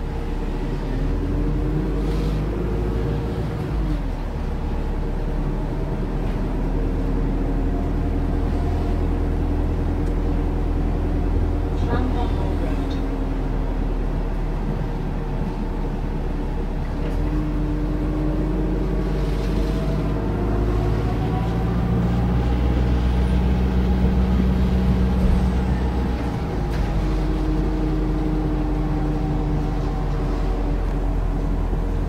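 Interior of a Volvo B5LH hybrid double-decker with a Wright Gemini 2 body, on the move: a steady low drivetrain rumble with whining tones that fall and rise as the bus slows and speeds up, loudest a little past the middle.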